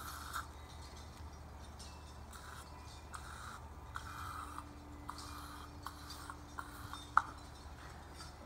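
Stoner Invisible Glass aerosol can sprayed onto a car side window in a series of short spurts, with a sharp click about seven seconds in.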